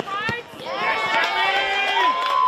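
A sharp knock right at the start, then several voices shouting at once, rising and held for over a second, as players and spectators at a football match yell during an attack on goal.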